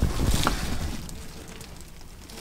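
A low rumble with a brief rustle about half a second in, fading over the first second into a quiet background: handling noise.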